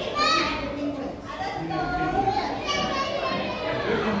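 Children's high-pitched voices calling out and chattering, with one loud high call just after the start.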